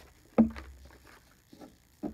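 Paper pages being pushed back onto the plastic discs of a disc-bound Happy Planner: one sharp snap about half a second in, then faint paper handling.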